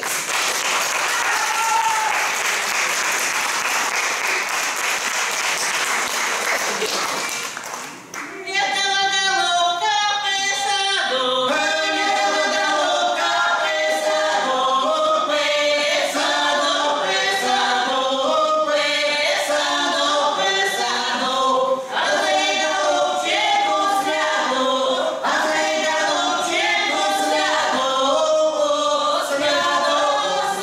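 Audience applause for about eight seconds, then a small Russian folk ensemble begins singing unaccompanied in several voices.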